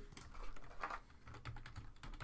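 Typing on a computer keyboard: a run of irregular light key clicks.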